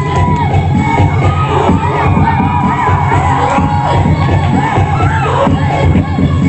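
Upbeat dance music for a flashmob routine, with a pulsing bass beat that comes back in at the start and crowd-like shouted, chanting vocals over it.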